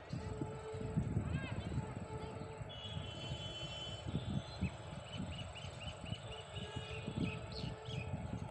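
Low, uneven rumble of a departing passenger express train as it pulls away. A bird chirps once about a second and a half in, then repeatedly, about twice a second, over the last few seconds.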